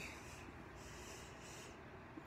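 Faint breathing close to a phone microphone, two soft breaths about a second in, otherwise near quiet.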